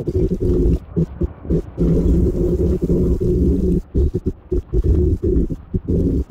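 Wind buffeting the camera microphone while cycling, a heavy, low rumble that flutters in and out irregularly.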